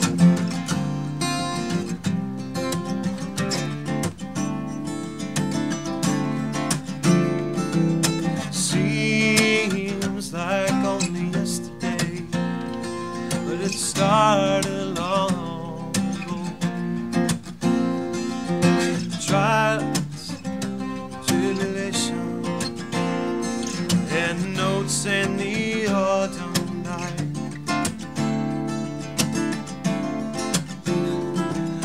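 Acoustic guitar strumming a song, played live.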